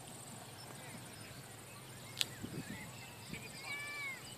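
Quiet outdoor background with a single sharp click about two seconds in, then a few faint, short high calls that glide downward, the clearest near the end.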